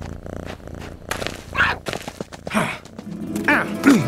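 Animated cat character's voiced cat noises: a low purring rattle at first, then several short chirping, meow-like calls as it stalks a laser-pointer dot.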